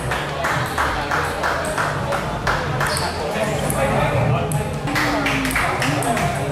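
Table tennis balls being hit in rallies: sharp clicks of celluloid-type ball on paddle and table, about two to three a second.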